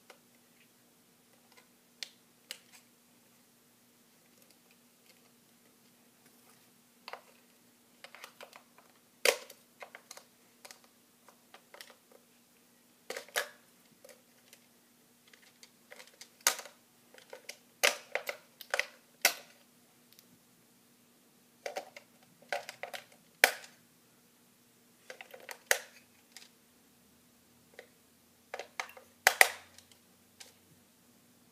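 Scattered clicks, taps and light knocks of small plastic parts being handled by hand, some single and some in quick clusters, loudest about nine seconds in and again near the end, over a faint steady hum.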